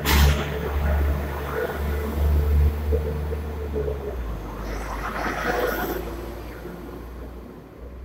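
West Midlands Railway diesel multiple unit moving along the platform and away: a low engine and wheel rumble that fades steadily as the train draws off.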